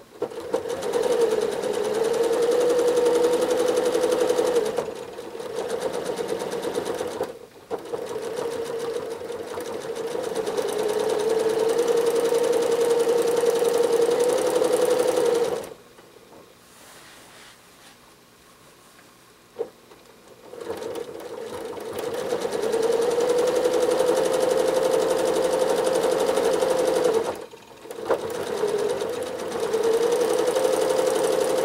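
Janome Horizon 7700 sewing machine stitching free-motion quilting. It runs fast in long stretches, its motor pitch rising and levelling off as the speed changes. It stops briefly about a third of the way in, for about five seconds in the middle with a single click, and briefly again near the end.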